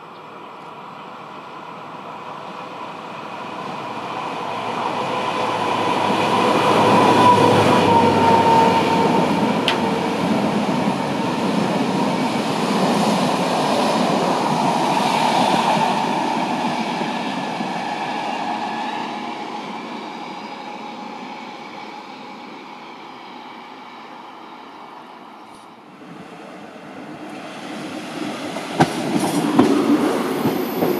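A class 757 diesel locomotive, its Caterpillar V12 engine running, hauls a passenger train past. It is loudest about seven to eight seconds in, then the coaches roll by with clickety-clack and the sound fades away. Near the end a class 810 diesel railcar's sound rises, with a few sharp clicks.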